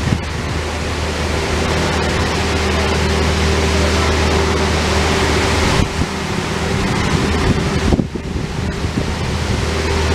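Bobcat T630 compact track loader's diesel engine running steadily as the loader drives forward with a full bucket of dirt, a low steady hum under a noisy rush, dipping briefly twice, about six and eight seconds in.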